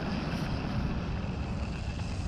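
Steady low rumble of riding along a paved path: wheels rolling on the pavement mixed with wind on the microphone.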